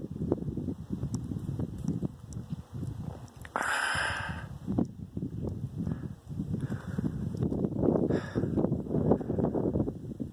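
A hiker's footsteps and scuffing on rocky trail with handling rumble on the phone's microphone, and a couple of heavy breaths, about four and eight seconds in, from the climb.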